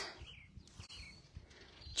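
Faint outdoor ambience with a few soft, brief bird chirps.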